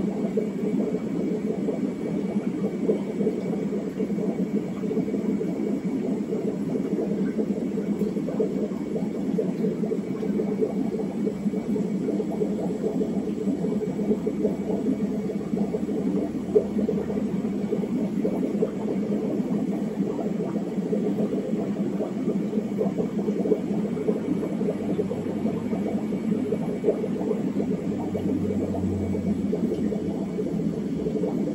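Steady low rumble and whir of aquarium aeration, air bubbling through sponge filters in fish tanks, with a faint steady high whine above it.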